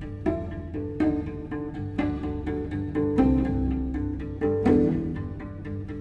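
Cello with electronics: pitched cello notes with sharp attacks about once a second, some closer together, layered over a sustained low bass.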